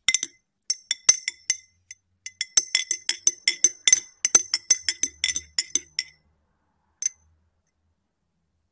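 A spoon clinking against the inside of a ribbed glass tumbler of tea as it stirs, each strike ringing briefly. A few spaced clinks come first, then a quick run of about five a second, then a single last clink near the end.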